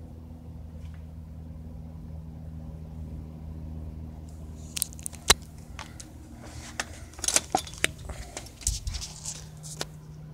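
Cessna light aircraft's piston engine droning overhead as a steady low hum. From about halfway, a string of sharp clicks and crackles sits over it.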